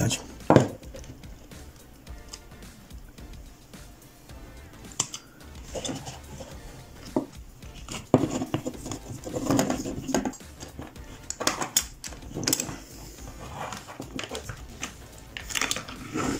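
Plastic housing of a hot glue gun being worked apart with a screwdriver: scattered clicks, knocks and scrapes of plastic and metal, with one sharp click about half a second in.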